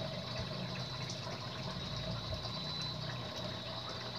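A steady rushing noise with a low hum under it, unbroken throughout.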